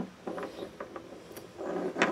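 Light clicks and rubbing from hands handling small pickup wiring parts against an acoustic guitar, with a sharper click at the end.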